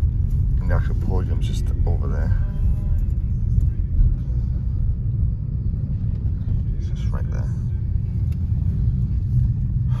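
Car engine and road rumble heard from inside the cabin as the car drives slowly, a steady low drone throughout. Brief snatches of faint voice come about a second in and again about seven seconds in.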